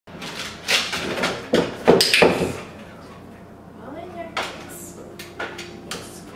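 A plastic tub knocking and scraping on a hard kitchen floor as a dog climbs into it, a quick run of clattering hits over the first two and a half seconds, then quieter.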